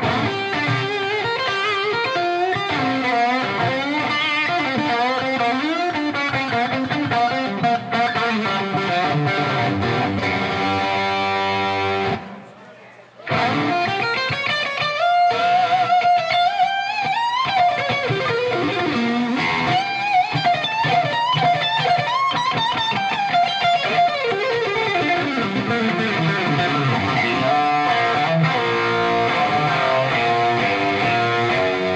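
A 1959 Gibson Les Paul electric guitar playing an unaccompanied lead line through an amplifier, with string bends and sustained notes. It breaks off for about a second around twelve seconds in, then carries on.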